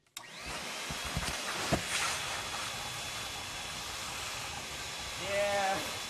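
Canister vacuum cleaner running with a steady motor hiss. A brief voice-like sound comes near the end.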